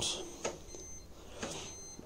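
Faint clicks from the rotary programme selector dial of a Hoover DXCC69IB3 washing machine as it is turned, a few clicks spread over two seconds, with a faint thin high-pitched tone in the background.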